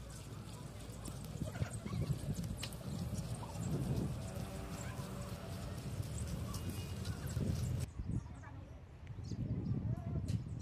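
Outdoor ambience of a public yard: scattered footsteps and knocks on a packed-earth path with faint voices of passers-by, and the background changes abruptly about eight seconds in.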